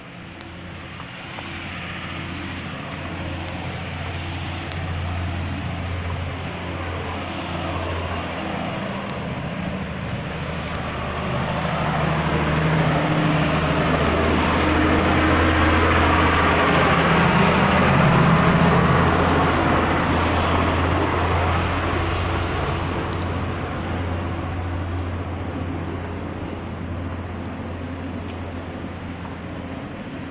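A motor vehicle's engine passing: a steady drone that grows louder over about a dozen seconds, peaks about two-thirds of the way through, then slowly fades.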